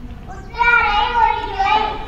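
A child's voice reading aloud into a microphone, over a steady low rumble of background noise.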